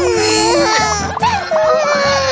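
A cartoon baby character's voice crying in long, wavering cries over background music.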